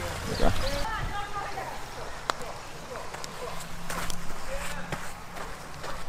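A mini golf putter tapping a ball: one sharp click about two seconds in, with a few weaker clicks later, over faint voices.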